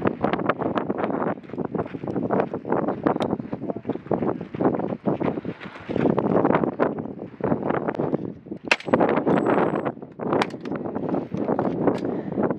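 Boots crunching on a gravel road as several people walk, a dense uneven run of crunches, with one sharp click about nine seconds in.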